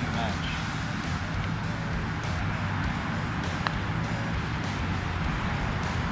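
A single light click of a putter striking a golf ball, about three and a half seconds in, over a steady low background rumble.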